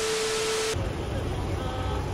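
TV-static glitch sound effect: a steady beep tone under loud static hiss, cutting off abruptly under a second in. City street noise with a low traffic rumble follows.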